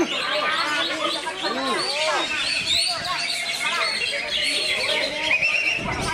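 Cucak ijo (green leafbird) singing in its cage amid a chorus of other contest songbirds: a dense, unbroken tangle of quick whistled chirps and slurred notes rising and falling, several birds at once.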